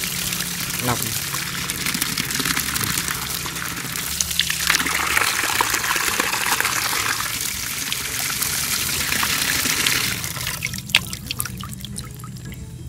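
A stream of running water pouring through a fine mesh strainer of soaked melon seeds and splashing into an overflowing bowl and onto concrete, as the seeds are rinsed. The flow gets heavier a few seconds in and stops about ten seconds in, leaving a few drips.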